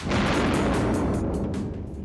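A sudden, loud rush of noise that fades away over about two seconds, laid over background music as a scene-transition sound effect.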